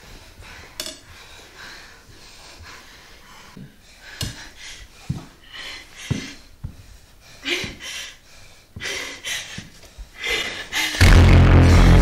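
A person breathing hard in short, ragged breaths, one after another. About eleven seconds in, loud music with a heavy bass comes in.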